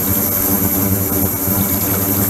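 Ultrasonic tank with a microbubble liquid-circulation system running: a steady machine hum with a high-pitched whine over it, and the hiss of water pouring from the circulation outlet onto the parts in the basket.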